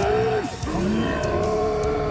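Long, strained yells from animated fighters locked in a struggle, each held on a steady pitch: one breaks off about half a second in and a second one starts just after.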